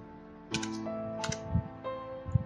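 Typing on a computer keyboard: two short clusters of keystroke clicks, over steady background music.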